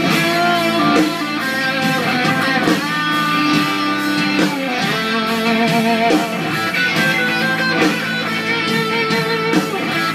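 Gibson Les Paul electric guitar playing a lead line of held notes with bends and vibrato.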